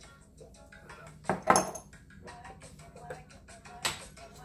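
Soft background music with a loud clink about a second and a half in and a sharp click near the end: small ceramic spice pots being handled and set down on a stone countertop.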